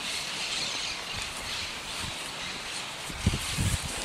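Steady outdoor background noise, with a few soft knocks near the end, likely from handling the horse's head and halter.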